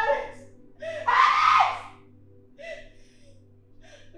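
A woman crying out in distress: a short sob at the start, then a loud, high-pitched wail about a second in and a weaker sob near the end, over a low steady music drone.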